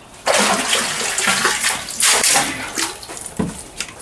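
Water pouring and splashing at a well with a wooden windlass. It starts about a quarter second in, gushes loudest about two seconds in, and dies down near the end.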